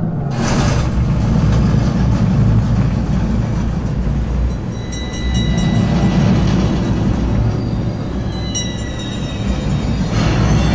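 Theme-park ride vehicle rumbling steadily along its track through a dark attraction, with the ride's soundtrack music and effects playing over it. A short burst of noise sounds about half a second in.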